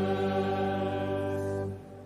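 Choir singing liturgical chant, holding a sustained chord that is released near the end.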